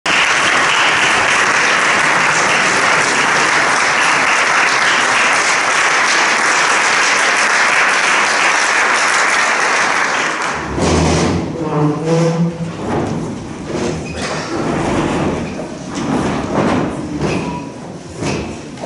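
Audience applauding steadily in a concert hall, stopping abruptly about ten seconds in. Then come scattered knocks and scrapes as the pianists settle onto the bench of the grand piano.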